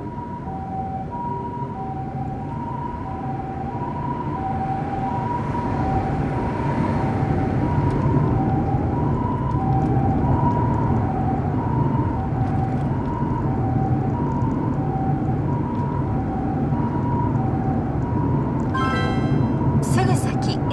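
Japanese ambulance two-tone hi-lo siren ("pee-poh"), alternating evenly between a higher and a lower tone about every half second or so, with the following car's engine and road noise beneath. It grows louder over the first several seconds.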